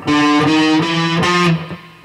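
Electric guitar picking four single notes in a row on one string, each a small step higher than the last, as in a chromatic run. The fourth note rings and fades out about one and a half seconds in.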